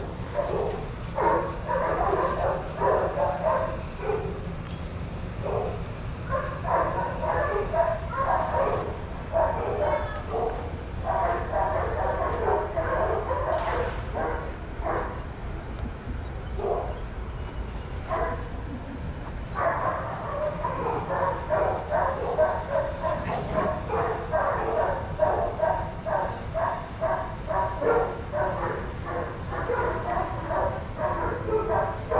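Several dogs barking in quick, repeated bursts, with short lulls between bouts.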